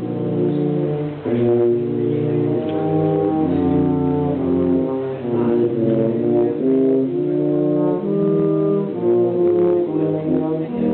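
Tuba and euphonium quartet playing a Christmas arrangement in four-part harmony, with held chords that change every second or so over a low bass line.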